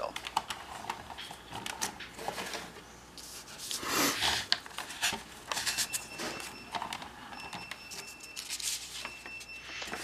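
Handling noise: a paper instruction sheet rustling and crinkling as it is picked up and unfolded, with scattered light clicks and knocks, and a louder rustle about four seconds in.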